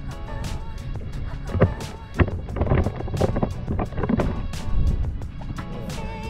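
Background music with a steady beat, over a low rumble from the boat on the water.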